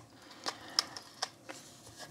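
A few light clicks and taps as a Panasonic RQ-NX60V personal cassette player's metal body and buttons are handled, about four in all, the sharpest a little under a second in.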